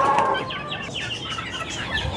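Young Aseel chickens peeping and clucking in many short, falling chirps, with a brief flap of wings near the start.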